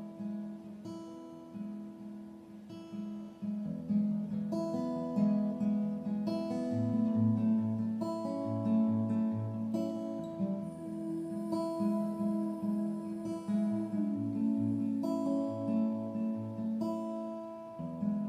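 Solo acoustic guitar playing a chord progression, the chords ringing and changing every second or two.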